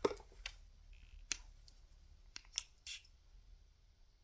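A handful of small, sharp plastic clicks and ticks, about seven, spread over a few seconds: a small fragrance bottle and its cap being handled and opened.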